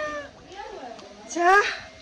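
A person's voice: a drawn-out word trailing off at the start, then one short, rising, high-pitched cry about one and a half seconds in.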